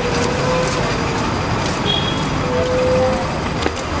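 Busy street traffic: vehicle engines running and road noise in a steady wash, with a faint steady tone that comes and goes.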